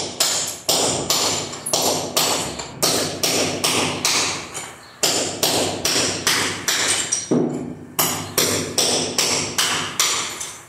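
Hammer blows chipping ceramic floor tiles off a concrete subfloor, about three sharp strikes a second, each with a brief ring. The strikes pause briefly about halfway through and again near three-quarters of the way.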